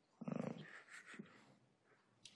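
A brief, low, wordless vocal sound from a person hesitating, like a drawn-out 'hmm', followed by a few fainter short mouth or voice sounds.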